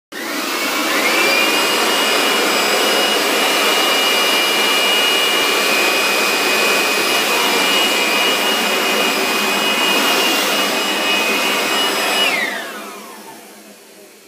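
A blower motor starts up, its whine rising to a steady high pitch within the first second. It runs loud and steady, then is switched off about twelve seconds in and winds down, the whine falling away.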